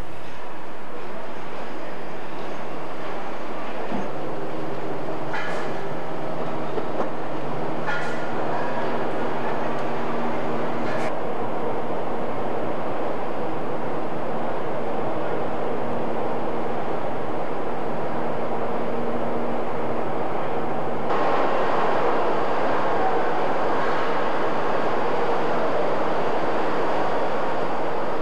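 Steady mechanical din of a car-factory assembly line, with a few short hisses about five, eight and eleven seconds in. The noise grows busier about two-thirds of the way through.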